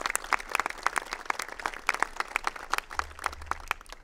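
Audience applauding with dense, irregular hand claps that thin out near the end.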